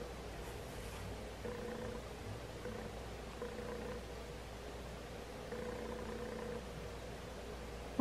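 Quiet room tone: a faint steady low hum, with a faint humming tone that comes and goes every second or so.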